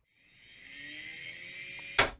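Record player's motor whirring as the turntable spins up with a 45 rpm single, a faint hum slowly rising in pitch as it comes up to speed. A sharp click comes near the end.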